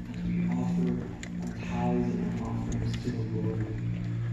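Church worship service heard over outdoor loudspeakers: a steady low held chord of worship music with a voice speaking over it in short phrases, and a few footstep clicks on the sidewalk.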